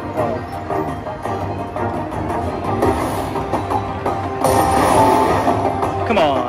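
Video slot machine's bonus-round music playing, an Asian-style melody over percussion, while the reels respin and coins lock in place. A brighter jingle comes about four and a half seconds in.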